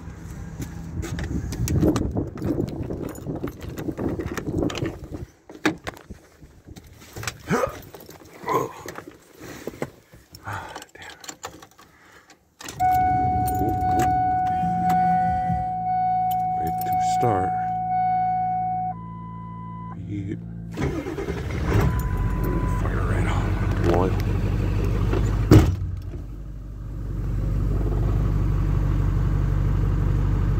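Rustling and knocks of someone climbing into a Ford Super Duty pickup's cab, then the ignition is switched on and a steady warning chime sounds for about six seconds while the diesel's wait-to-start light is lit. About two-thirds in the diesel engine starts and settles into a steady idle, with one sharp knock shortly before it steadies.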